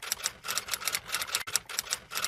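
Typewriter key clicks, a quick run of several strikes a second, going with text being typed out on screen.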